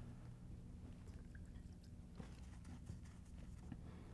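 Near silence: a steady low room hum, with a few faint soft clicks and taps from about two seconds in.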